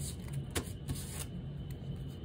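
Tarot cards being handled: a sharp click about half a second in, then a short rustle, over a low steady hum.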